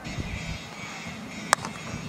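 A single sharp crack of a cricket bat hitting the ball, about one and a half seconds in, over a faint steady background.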